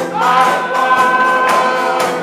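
Gospel choir singing, holding one long note through most of the moment, over a steady beat of percussion.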